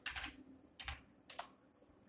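Computer keyboard being typed on: a few separate, faint keystrokes, finishing a word and pressing Enter.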